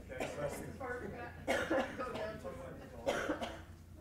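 Low chatter of audience members still talking in pairs, with a cough.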